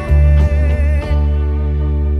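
Electric bass played with the fingers along with a recorded song: low root notes, a new note plucked about half a second and a second in, then one note held as the higher parts of the backing music fade away.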